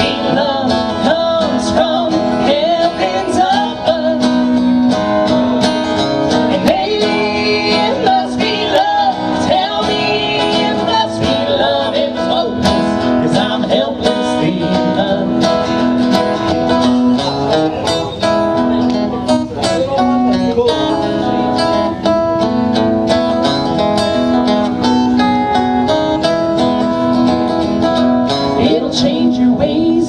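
Live country duet: acoustic guitar strumming steadily, with male and female voices singing at times over it.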